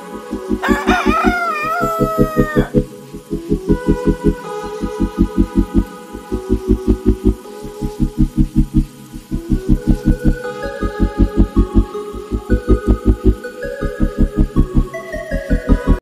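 A rooster crows once, a wavering call of about two seconds just after the start, over background music with a steady low beat of about four pulses a second.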